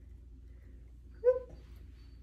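A single brief, high-pitched vocal sound a little over a second in, against quiet room tone.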